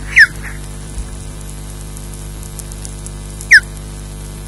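Juvenile osprey giving two short, loud whistled calls that slide sharply down in pitch, one just after the start and one near the end, over the steady hum and hiss of the nest camera's microphone.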